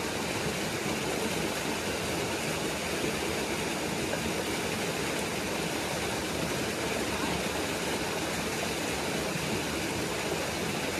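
Steady rushing noise like running water, even and unchanging throughout.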